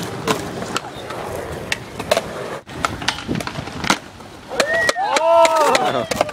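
Skateboard wheels rolling on concrete with sharp clacks of boards, then a person's voice calling out in long rising-and-falling tones near the end.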